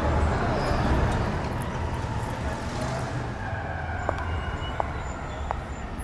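Street ambience: a steady low traffic rumble with a distant siren wailing, fading out within the first few seconds. A few faint ticks follow near the end.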